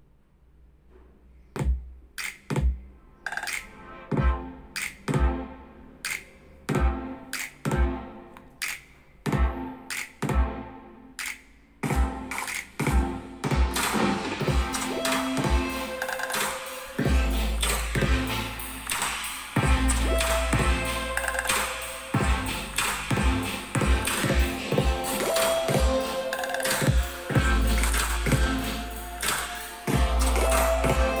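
Music played out loud through two Bluetooth speakers at once, a JBL Flip 3 and a Harman Kardon Onyx Studio 4. It opens with sparse, evenly spaced beats that grow louder, then the full track comes in about fourteen seconds in, with deep bass from about seventeen seconds.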